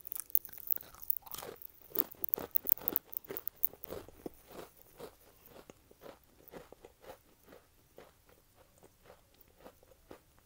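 A close-miked bite into a crisp Gamesa assorted cookie, with a few sharp snaps, then dense crunchy chewing. About halfway in the chewing grows softer and slower, down to about two soft crunches a second.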